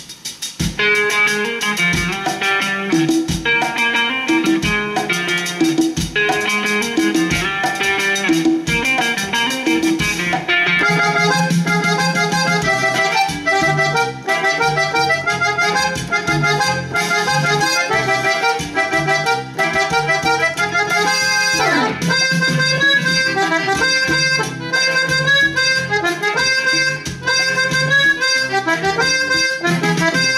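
Swing-tuned Gabbanelli M101 button accordion sample played as a tune on a Korg keyboard, reedy accordion notes over a steady beat.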